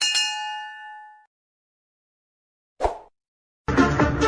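Animated subscribe-button sound effects: a click and then a bright bell-like notification ding that rings and fades over about a second. A short burst of noise follows near three seconds in, and music starts just before the end.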